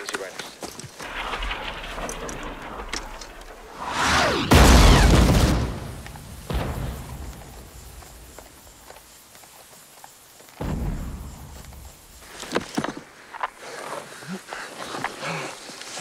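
Shell explosions from a fire mission that has just been called in: one loud blast about four and a half seconds in, with a low rumble, and a second, lighter blast around ten and a half seconds. These are the first rounds, whose fall is being spotted so the fire can be adjusted.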